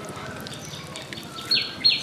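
A bird calling: a quick series of short, high chirps, each falling in pitch, about three a second, starting about one and a half seconds in.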